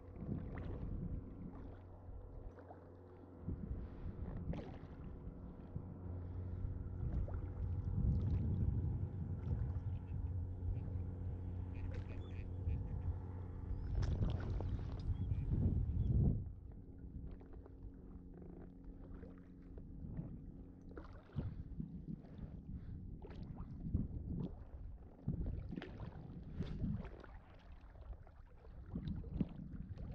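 Lake water sloshing and splashing around a float tube as it moves across choppy water, with wind rumbling on the microphone, loudest about halfway through. A faint steady hum runs under the first half.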